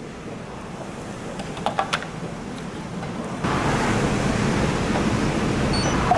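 Steady rushing hiss that steps up louder about halfway through, with a few faint clicks, and a short high electronic beep near the end from a handheld blood lactate meter.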